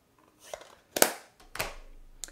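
Hands handling paper craft supplies on a desk: a brief rustle, then a sharp knock about a second in and a softer one just after.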